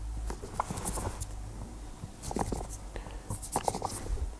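Light scratching and clicking of a micro screwdriver's tip picking old polish out of the broguing holes in a leather shoe's toe cap, coming in several short clusters of clicks.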